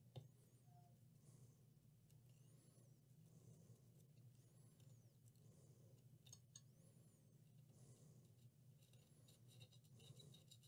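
Near silence: faint room tone with a steady low hum and a soft click just after the start.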